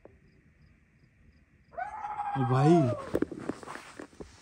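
Over a faint steady insect hum, a long unidentified call starts about two seconds in, high-pitched and falling as it goes. A man's low voice sounds beneath it.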